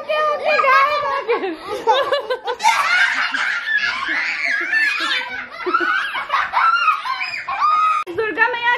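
Several young children laughing and chattering, with more voices piling in high and overlapping from about three seconds in.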